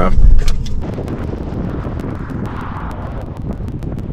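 Road and wind noise of a moving vehicle: a loud low rumble for about the first second, then a quieter, steady rush.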